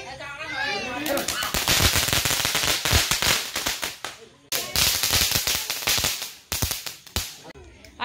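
Fireworks crackling: a loud, dense run of rapid sharp cracks starting about a second in, breaking off for a moment near the middle and starting again, then stopping shortly before the end.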